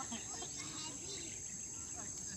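Steady high-pitched drone of insects, unbroken throughout, with faint distant voices beneath it.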